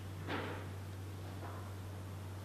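Quiet room tone with a steady low hum, broken by one brief soft rustle-like noise about a third of a second in.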